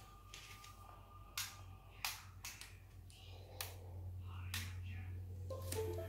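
Scattered sharp clicks and taps as a power cord is plugged in and a Teac UD-H01 USB DAC is switched on. A low hum grows in about three seconds in.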